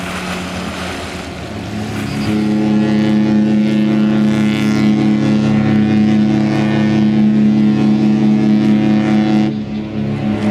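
Cruise ship's horn sounding one long, deep blast of about seven seconds. It starts about two seconds in and cuts off just before the end.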